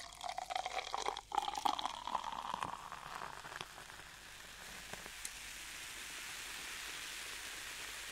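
A crackling, fizzing noise with a faint tone that rises slowly over the first three seconds, then settles into a soft, steady hiss.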